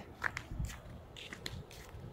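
Footsteps on a concrete pool deck: a few faint, scattered light clicks and scuffs over a quiet background.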